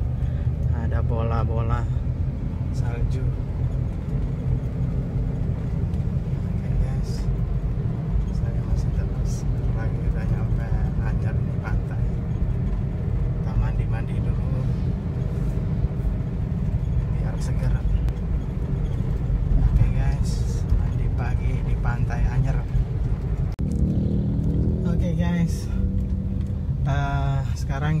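Steady low rumble of engine and road noise inside a moving car's cabin, with indistinct voices coming and going over it. The sound changes abruptly about three-quarters of the way through.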